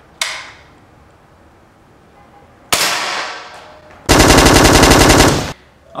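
Gunshots: a sharp single shot just after the start and another about 2.7 s in, each with a short ringing decay, then about four seconds in a loud burst of rapid automatic fire lasting about a second and a half.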